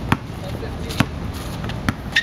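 Basketball dribbled on an outdoor asphalt court: three sharp bounces, a bit under a second apart, over a steady low background hum.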